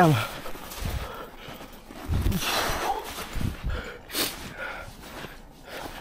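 Footsteps in snow: slow, careful steps on a slippery snowy path, a low thud with a crunch roughly every second and a bit.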